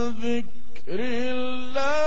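A man reciting the Quran in the melodic tilawa style, drawing out long held notes. About half a second in the held note slides down and breaks off; a new note swoops up and is held, stepping higher near the end.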